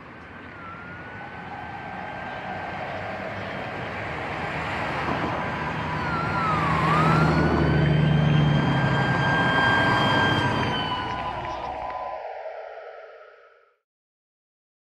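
Wailing, siren-like tones gliding up and down over a broad rumble. The sound swells up from silence, is loudest around the middle, and fades out shortly before the end.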